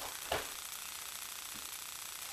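A single dull thump about a third of a second in: a trainee's body or feet hitting the foam training mats during a martial-arts throw or roll. Under it is a steady, faint room hiss.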